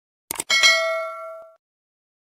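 Subscribe-button animation sound effect: a quick mouse click, then a small notification bell dings once and rings out over about a second.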